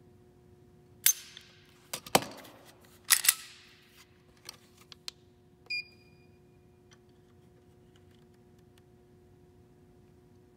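Sharp metallic clicks and clacks from a Springfield Hellcat striker-fired pistol being cycled and its trigger pulled against a digital trigger pull gauge. They come in a cluster over the first few seconds, and a short high beep from the gauge follows about six seconds in as it takes the new pull-weight reading.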